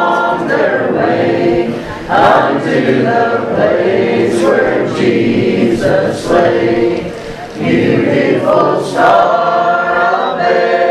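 A choir singing a hymn, many voices together in long sung phrases with brief breaks between them.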